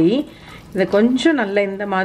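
Speech: a woman talking, with a brief pause shortly after the start.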